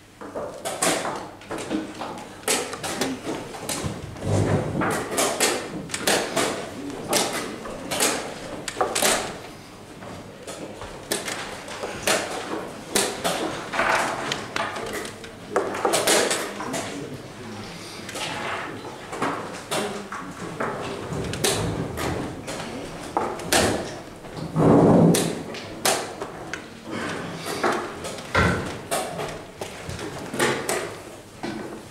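Wooden chess pieces set down, slid and knocked on the board, and the chess clock struck after each move, in a fast, irregular run of clicks and knocks during blitz play. There is one heavier thump about two thirds of the way in.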